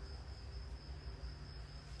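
A steady, high-pitched cricket trill over a low background hum.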